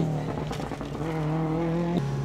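Subaru Impreza rally car's turbocharged flat-four engine running under load as the car takes a corner, holding a near-steady note that rises slightly early on.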